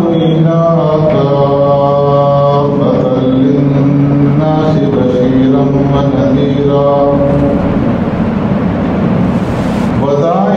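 A man's voice chanting in long, held melodic notes, stepping from one pitch to the next.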